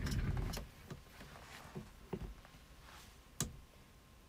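Handling noise as a person moves close to the microphone and picks up a smartphone: a low rumble at the start, then scattered light taps and clicks, with one sharper click near the end.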